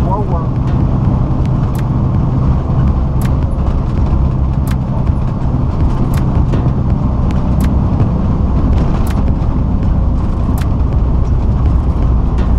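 Engine and road noise inside a moving truck's cab at highway speed: a steady low drone, with a faint sharp click about every second and a half.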